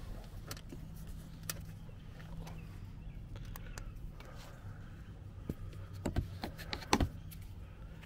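Scattered light clicks and scrapes of a plastic wheel-arch liner being pushed and flexed by hand, the loudest few near the end, over a low steady hum.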